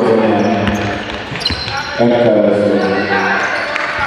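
A basketball bounced a few times on a hardwood court, heard under a louder voice or music that holds long pitched notes.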